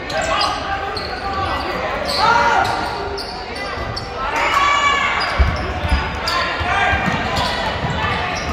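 Gym noise of a live basketball game: a basketball bouncing on the hardwood court, sneakers squeaking, and spectators and players calling out, echoing in the large hall. A couple of heavy thuds stand out about five and a half and six seconds in.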